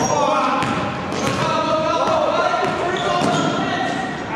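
A basketball being dribbled on a hardwood gym floor, with players' indistinct voices echoing in the large hall.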